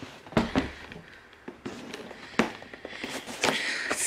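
Black cardboard gift box being handled: a few sharp knocks and taps, about half a second in and again around two and a half seconds, then a brief scraping rustle near the end.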